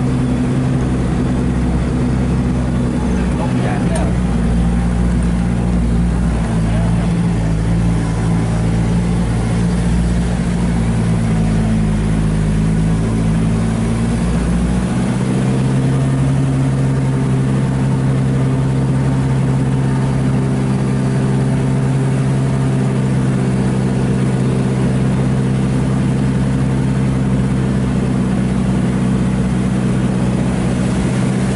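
A vehicle's engine runs steadily, heard from inside the cabin while it drives along a dirt track. The engine note changes about fifteen seconds in, when the deepest hum drops away and a steadier, higher drone takes over.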